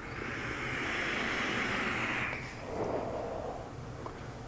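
A long draw on a rebuildable dripping atomizer fitted with a cotton-wicked double stove-top wrap coil: a steady hiss of air and firing coil for about two and a half seconds, then a softer, lower breath as the vapour is exhaled.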